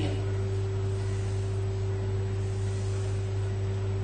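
A steady low electrical hum with a fainter, higher steady tone above it, unchanging, with no other sound standing out.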